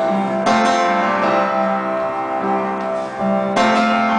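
Piano playing sustained chords, with a new chord struck about half a second in and another near the end.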